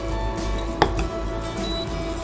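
A metal utensil knocks sharply once against a pan on the hob, about a second in, with a lighter tap just after, over steady background music.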